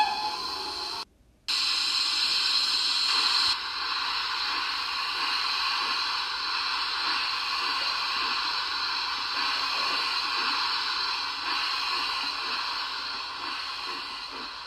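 Steady hiss like a steam locomotive letting off steam, just after a brief rising whistle-like tone at the start. The hiss cuts out for a moment about a second in, then runs on evenly.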